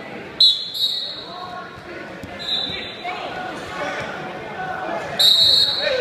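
Referee's whistle blowing three short, shrill blasts: about half a second in, about two and a half seconds in, and near the end, over voices in a large hall.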